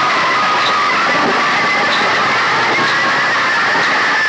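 Very loud music from a DJ sound-box speaker rig, so heavily distorted that it comes through as a dense, steady noise with only faint traces of the tune.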